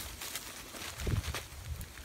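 Hand-cranked mainline drill tool boring a hole into plastic maple-sap mainline tubing: faint scraping with a few small clicks.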